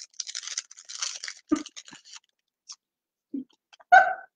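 Irregular crackling and crunching from snacks being handled and eaten close to the microphone, stopping about two seconds in.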